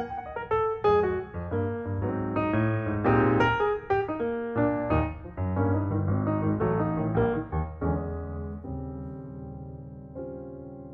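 Background piano music: a flowing melody of struck notes over low bass notes, thinning out and fading away in the last couple of seconds.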